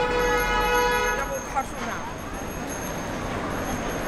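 A car horn sounds one steady blast that stops about a second in, followed by the noise of passing traffic.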